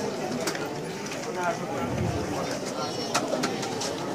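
Murmur of an outdoor crowd with faint, indistinct voices, and a few sharp clicks.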